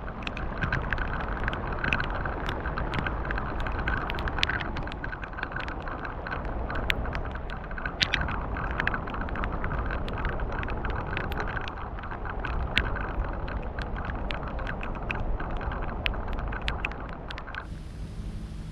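Heavy rain falling on a lily pond: a steady hiss of rain on the water and lily pads, with many sharp taps of single drops and a low rumble beneath. It stops abruptly just before the end.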